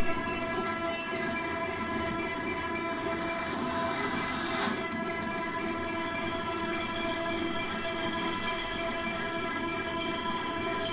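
Contemporary chamber ensemble with live electronics sustaining a dense, unchanging chord of many steady tones, with a fast, even flutter in the upper range.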